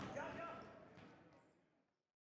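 Basketball game sound in a gym: voices and a few sharp knocks of a bouncing ball, fading out to silence near the end.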